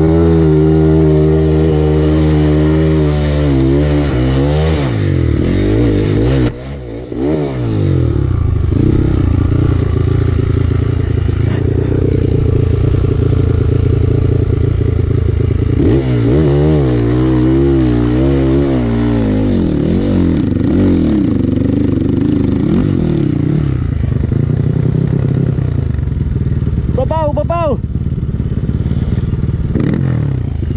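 Kawasaki KLX trail bike's single-cylinder four-stroke engine running under load on a dirt trail, heard close from the bike, its revs rising and falling with the throttle. The engine note dips briefly at about six and a half seconds, and a short wavering higher sound comes near the end.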